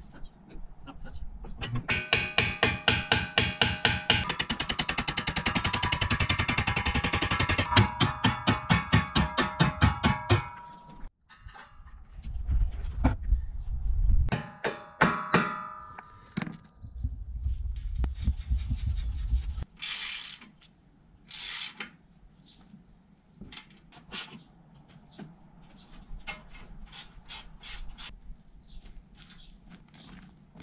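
A hammer repeatedly striking steel, each blow ringing, in a fast run of several seconds that slows to separate blows, then a shorter burst of ringing strikes about halfway through, as a pivot pin is knocked into an excavator arm. Scattered knocks and clicks follow.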